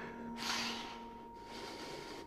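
A frightened man's heavy breath, one loud sudden exhale about half a second in that fades over the next half second, over a faint steady tone held underneath.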